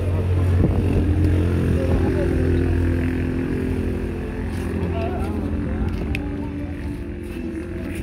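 A motor vehicle's engine running steadily with a low hum, slowly fading toward the end, with faint voices underneath.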